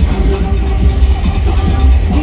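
Loud carnival music, typical of soca, played over a parade sound system with a heavy, constant bass.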